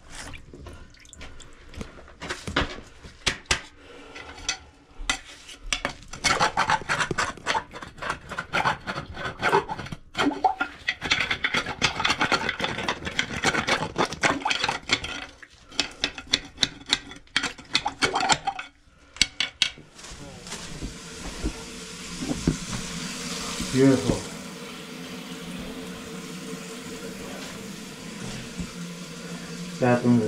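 A metal rod scraping and knocking inside a rusted cast-iron drain pipe, with many sharp clicks and scrapes as debris is fished out. About twenty seconds in it gives way to steady running water from a bathtub faucet.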